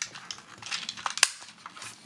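Hard plastic toy parts clicking and rubbing as they are handled and moved, with scattered small clicks and one sharper click just over a second in.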